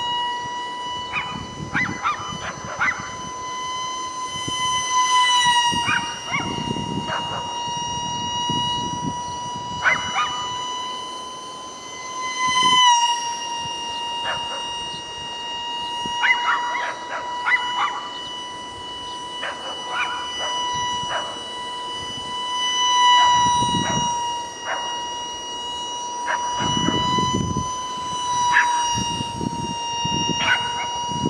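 A 30 mm electric ducted fan on a micro foam RC jet, whining steadily at a high pitch in flight, with small shifts in pitch about five and thirteen seconds in as the throttle changes. Short scattered noises break in over the whine.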